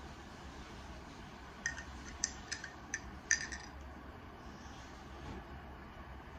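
Metal straw clinking against a drinking glass: a quick run of light clinks over about two seconds.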